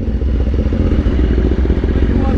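BMW S1000RR inline-four on an Akrapovic exhaust, running steadily at low speed with a dense, even low rumble.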